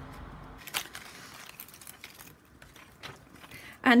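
Paper rustling with a few soft clicks as the tags and pages of a spiral-bound junk journal are handled and a page is turned.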